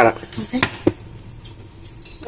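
A few light clicks and knocks from a stainless saucepan being handled on a glass cooktop, the sharpest just under a second in, then quiet room tone.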